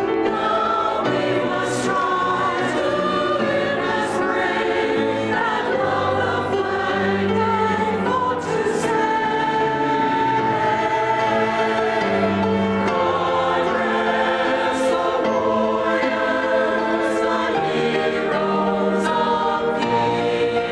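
Mixed choir of men and women singing a hymn-style anthem with grand piano accompaniment, continuous sustained notes.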